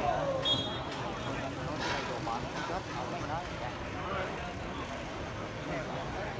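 Indistinct voices of several people talking at a distance, over a steady low outdoor rumble, with a brief faint high tone about half a second in.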